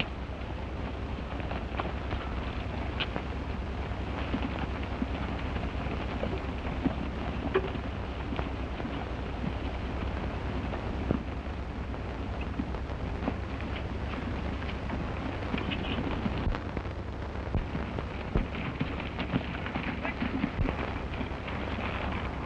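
Hoofbeats of a group of horses galloping over dry ground: irregular thuds and knocks over a steady hiss and low hum.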